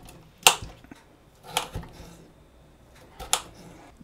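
Knife blade cutting through peeled potato and striking a glass cutting board: three sharp clicks, roughly a second or more apart.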